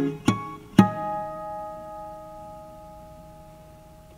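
Closing bars of guitar music: three quick plucked notes in the first second, then a final chord left ringing and slowly fading.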